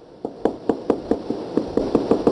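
Felt-tip marker tapping dots onto a whiteboard: a quick run of sharp taps, about six a second, starting a moment in.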